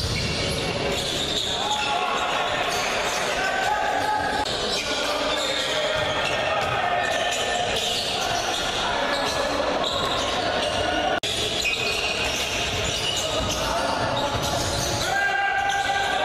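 Live basketball game sound in a large gym: a ball bouncing on the hardwood court amid voices echoing in the hall, with a brief drop-out about eleven seconds in.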